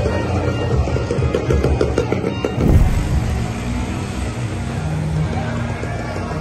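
Bass-heavy background music together with a small motorcycle engine running close by. The engine is loudest about halfway through, where its pitch drops.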